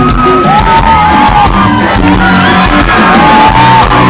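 Rock band playing live and loud: electric guitar, bass and drums, with long held high notes that bend up at their start and fall away at their end.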